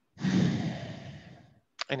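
A man's long sigh: a loud exhale close to the microphone that starts strongly and fades away over about a second and a half.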